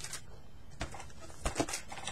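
A few faint clicks and light rustling from vinyl record sleeves being handled while the next album is pulled out, over low room hiss.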